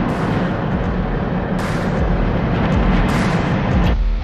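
Wheel loader's diesel engine running close by, heard as a loud, steady, rough rumble.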